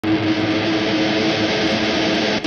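Steady rushing noise with a low hum underneath, an intro sound effect that starts abruptly and holds even.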